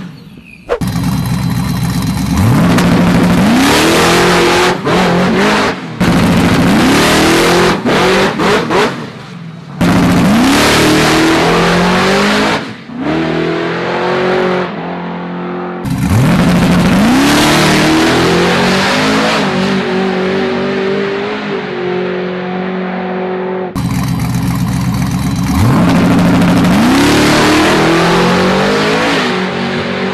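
Procharger-supercharged Mazda Miata drag car's engine revving hard through several launches: each time the pitch sweeps quickly upward and then holds high at full throttle. The sound cuts off abruptly several times between runs.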